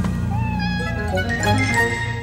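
Cartoon kitten meowing with a few short gliding cries, over background music.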